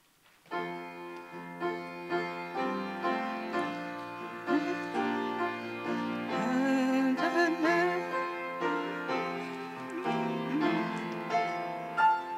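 Keyboard playing the opening chords of a hymn, starting suddenly about half a second in, with a few voices beginning to sing along partway through.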